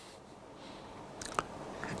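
Quiet room tone with a single small mouth click, a lip smack, a little past the middle, and a fainter tick just after it.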